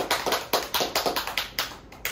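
Hand clapping at about five claps a second, growing slightly fainter near the end.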